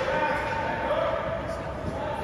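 A person's voice calling out in a long, drawn-out shout, echoing in a large ice rink arena, over the arena's steady background noise.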